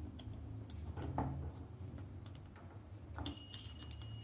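Multimeter probe tips ticking and scraping faintly on the pins of an 8-pin timer relay, then from about three seconds in a steady high continuity beep from the multimeter: pins 1 and 4, the timer's normally closed contact, are connected while the timer is unpowered.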